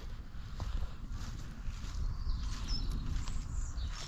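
Low, steady rumble of a bicycle rolling along a dirt path, with tyre noise and wind on the microphone and a few faint ticks.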